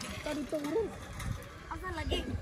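Voices at some distance: short, high-pitched calls and chatter, likely from the children playing in the shallow water, with no clear words.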